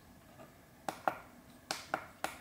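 Buttons on a Neewer F200 field monitor clicking as its menu is navigated. There are four sharp clicks in two quick pairs, about a second in and again near the end.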